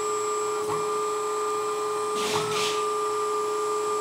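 Hydraulic pump of a 1/14-scale LESU Komatsu PC360 RC excavator running with a steady whine while the bucket cylinder curls the bucket under the newly set control curve. There is a brief hiss a little past two seconds in.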